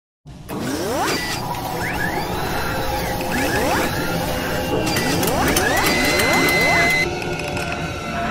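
Sound effects for an animated mechanical intro: clicks and ratcheting machinery with a series of rising sweeps, and a high held tone shortly before it settles down near the end.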